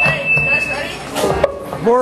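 Voices over a live club PA between songs, with a brief steady high-pitched tone lasting about a second at the start.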